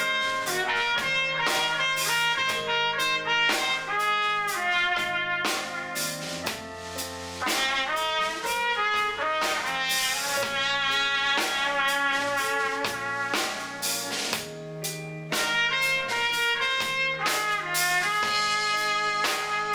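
Live small band playing: a trumpet carries a moving melody over drum kit and electric bass.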